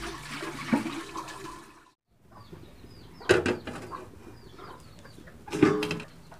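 Water sloshing and running off as raw chicken gizzards are rinsed by hand in a steel basin. After a brief break, a metal cooking pot clanks twice, with a short ringing after each knock, and faint bird chirps in between.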